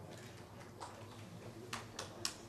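A few scattered single hand claps in a quiet hall: one a little under a second in and two more close together near the end, as applause begins to build.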